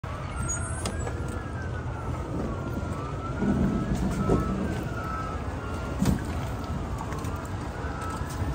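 A distant emergency-vehicle siren wailing, its pitch slowly rising and falling every two seconds or so, over a steady low rumble. A couple of knocks come in the middle as the semi truck's tilt hood is unlatched and swung open.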